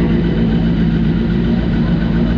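Suzuki Hayabusa inline-four motorcycle engine in a single-seater hillclimb prototype, idling steadily.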